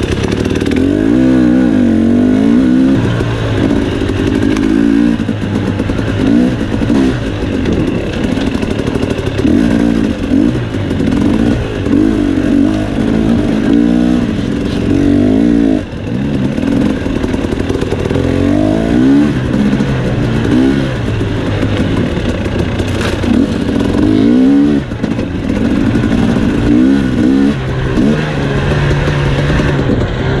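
KTM 250 XC two-stroke dirt bike engine being ridden on a trail, the revs climbing and falling again and again as the throttle is worked, with a brief let-off about halfway through.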